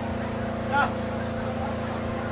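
A steady machine drone of several low tones, at an even level, with people's voices around it and one short call about three-quarters of a second in.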